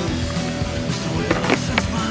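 Rock music with guitar plays over the sound of a freestyle skateboard on asphalt, with three sharp clacks of the board in the second half.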